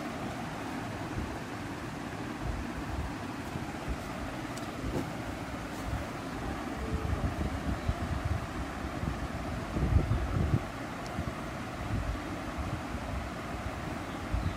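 Moving air buffeting the microphone: a steady hiss with irregular low gusty rumbles, loudest about ten seconds in.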